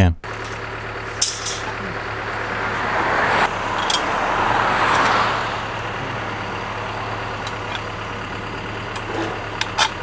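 Diesel engine of a wheeled excavator humming steadily at idle, with a passing vehicle that swells and fades around the middle and a few short, sharp knocks.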